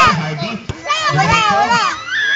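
Several spectators' voices calling out and shouting over one another.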